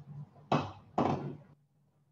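Two wooden knocks about half a second apart from a pair of wooden meter sticks being handled and set in place.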